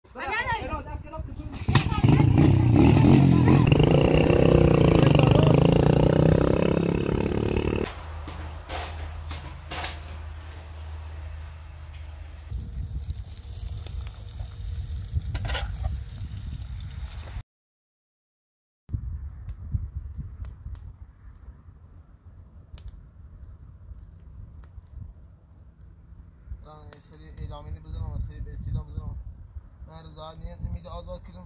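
People talking in a string of short outdoor clips. The background sound changes abruptly at each cut, and there is a second or so of dead silence about halfway through.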